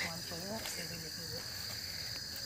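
Steady high-pitched chirring of night insects.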